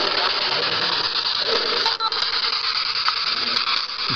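Steady hiss of static, like an untuned radio, with a short dip about two seconds in.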